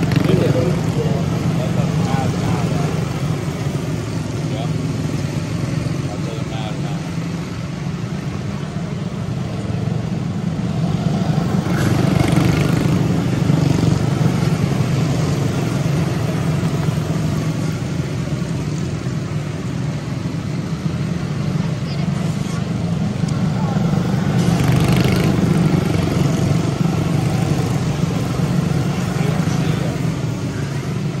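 A pack of quarter midget race cars running their small Honda engines at racing speed, a steady buzzing drone. It swells louder about twelve seconds in and again around twenty-five seconds as the field sweeps past.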